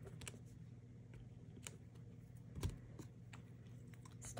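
Faint light clicks and taps of a clear acrylic stamp block being handled and set against the paper and ink pad on a craft desk, with one slightly louder soft knock about two and a half seconds in, over a low steady hum.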